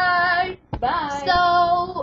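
A young girl singing two short held notes, each sliding up in pitch at its start and then holding steady, with a brief break a little past halfway.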